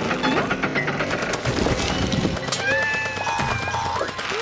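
Cartoon sound effects of rapid clattering taps, over background music; held musical notes come in about two and a half seconds in.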